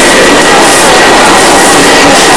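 Loud, steady din of a busy covered market, a dense noise with no distinct voices and a faint constant high whine running through it.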